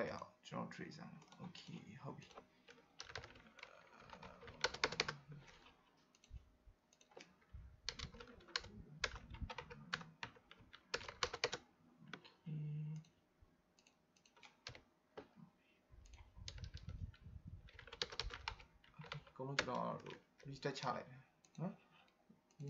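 Typing on a computer keyboard: clusters of keystrokes with pauses between them.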